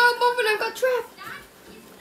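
Speech only: a high-pitched, child-like voice says a short line of film dialogue over about the first second, and then it goes quiet.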